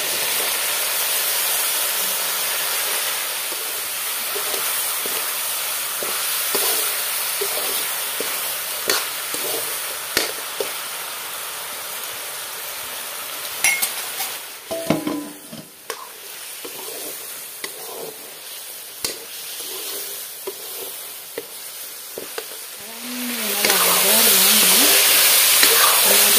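Vegetable stems and meat stir-frying in a wok: steady sizzling with the clicks and scrapes of a spatula against the pan. The sizzling drops quieter about halfway through, then surges loud again a few seconds before the end.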